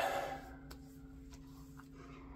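Quiet room tone with a faint steady hum, broken by three faint light ticks spread across the two seconds.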